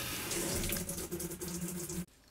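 Top-loading washing machine starting its cycle: water rushing into the tub as it fills, with a steady low hum underneath.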